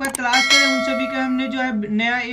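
Subscribe-button animation sound effect: a short click, then a bright bell chime that rings and fades over about a second and a half.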